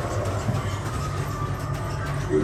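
A low, steady rumbling drone with a faint held higher tone above it: the ambient soundscape of a haunted-house attraction.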